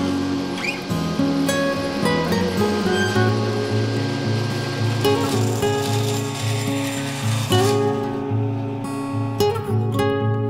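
Background music with acoustic guitar.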